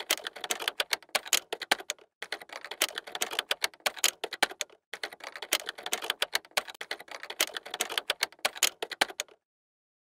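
Rapid typing on a computer keyboard: three runs of fast key clicks with short breaks about two and five seconds in, stopping near the end.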